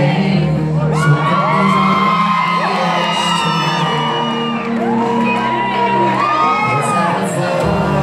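A live pop band playing in a large hall, with high whoops and screams from the crowd over the music, twice: from about a second in and again midway through.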